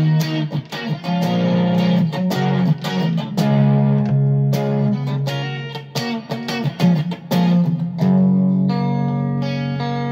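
Electric guitar strumming chords through a Zoom G2.1U multi-effects pedal with its chorus turned up, played out of the amp. Quick strokes run for most of the time, then about eight seconds in one chord is left ringing.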